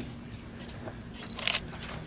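A camera's short high focus beep followed by quick shutter clicks about a second and a half in, over a steady low room hum.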